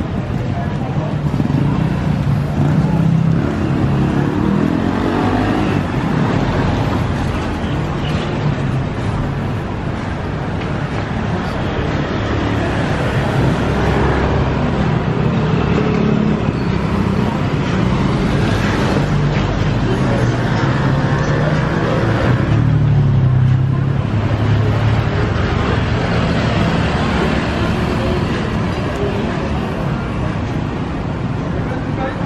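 City street traffic on a wet road: car and motorbike engines running and passing, a steady low hum with tyre noise that swells as vehicles go by, most strongly a few seconds in and again about two-thirds of the way through.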